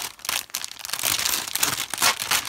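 Clear plastic packaging crinkling as it is handled and pulled off a planner cover, with an irregular stream of crackles.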